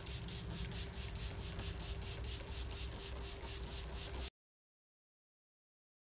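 Outdoor background sound: a fast, even ticking of about six to seven ticks a second over a steady low hum, which cuts off to dead silence about four seconds in.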